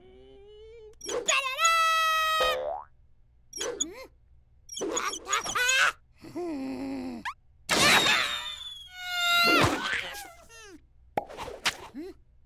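Cartoon sound effects: a springy boing among a string of a cartoon chick's squeaky, wordless vocal noises, each short and bending up and down in pitch.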